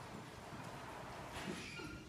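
Footsteps and shuffling of hard shoes on a wooden stage as a choir settles onto its risers: faint scattered knocks, one a little louder about a second and a half in.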